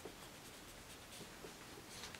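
Faint rustling of fingers sliding over the glossy paper of a photobook as a page is taken hold of to be turned.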